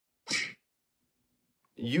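A single short, sharp breathy burst from a man's voice about a quarter of a second in, lasting about a third of a second. Near the end he begins to speak.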